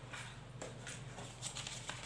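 Quiet room tone with a few faint, soft clicks or taps.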